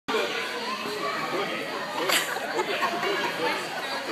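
Overlapping chatter of children's and adults' voices in a large hall, with a brief sharp noise about two seconds in.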